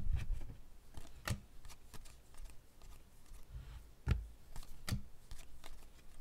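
A stack of glossy Panini Contenders football cards being flipped through by hand, cards sliding and snapping against one another. Scattered soft knocks come through, the loudest right at the start, then about a second in and around four and five seconds in.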